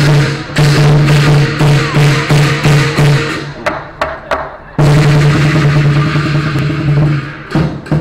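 Lion dance percussion: a large Chinese drum and clashing cymbals playing a loud, fast rhythm that breaks off briefly about three and a half seconds in and again near the end.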